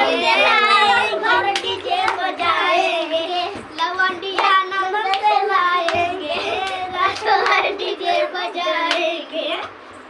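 A high voice singing a song with long, wavering notes, with a few sharp claps.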